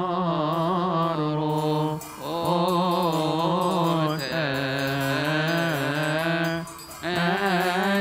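Coptic liturgical hymn chanted by a male voice in long, drawn-out melismatic phrases, the held notes wavering in pitch, with short breaks for breath about two seconds in and again near the end.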